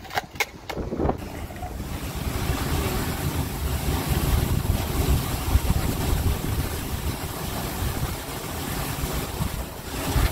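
A few sharp clacks of a skateboard on concrete in the first second. Then steady wind buffeting the microphone over a low rumble, as when riding in the open back of a moving vehicle.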